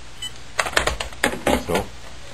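Plastic telephone handsets being hung up: a quick run of clicks and clacks as a cordless handset goes onto its charging base and a corded handset onto its cradle.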